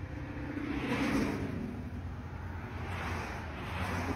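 Road traffic: passing cars, their noise swelling and fading twice, once about a second in and again near the end, over a steady low hum.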